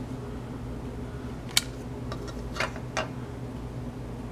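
A few light clicks and taps from plastic model-kit parts being handled, three in all, the sharpest about a second and a half in. A steady low hum runs underneath.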